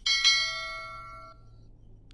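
A single bright bell chime, the notification-bell sound effect of an animated subscribe button, struck once and ringing out with several high tones that fade away over about a second and a half.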